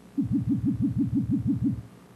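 Computer-synthesized sound effect from the titration simulation: a pure electronic tone repeating about ten times, roughly six per second, with each note falling quickly in pitch. It is the program's signal that the solution has reached equivalence.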